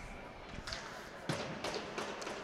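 Faint ice-rink ambience with a couple of short, sharp knocks about half a second apart, hockey sticks striking the ice at a faceoff.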